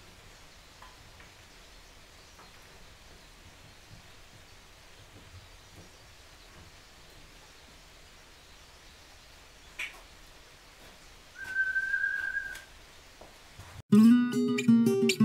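Faint workshop room tone with a few light clicks of handling at a workbench, then, about two-thirds through, a single steady high tone held for a little over a second.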